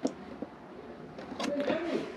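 Clicks of a Dometic fridge's plastic rotary selector knob turned by hand from the mains setting to the battery setting, one at the start and another about halfway through.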